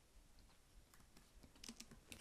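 Faint computer keyboard keystrokes: a few sparse clicks, several of them close together near the end.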